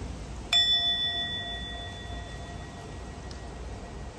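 A brass singing bowl struck once with a wooden striker about half a second in, then ringing with several clear overtones that fade away over two to three seconds, the lowest tone lasting longest.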